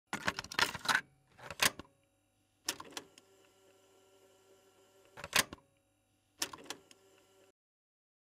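Typewriter-like clattering sound effect: five bursts of rapid mechanical clacks, the first and longest at the start, with a faint steady ringing between them, cutting off shortly before the end.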